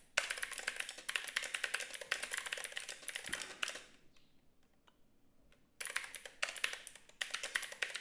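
Typing on a computer keyboard: two runs of fast keystrokes with a pause of about two seconds between them.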